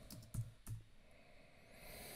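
A few faint keystrokes on a computer keyboard in the first second, then a soft hiss that swells near the end.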